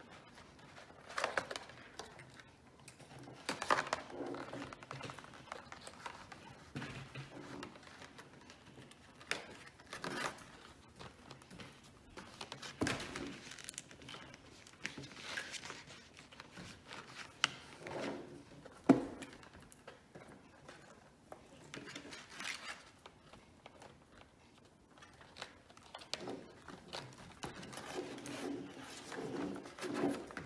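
Irregular rustling and light knocks of stiff card and paper being handled as small twist ties are worked through the holes of a punched card panel. One sharp click about two-thirds of the way through is the loudest sound.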